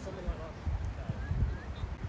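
Quiet outdoor ambience: an irregular low rumble with faint, distant voices.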